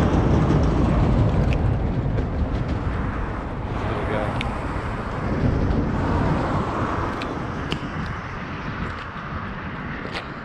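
Uneven rumbling noise on the microphone, strongest in the low end and easing slightly toward the end. A few sharp ticks are scattered through it.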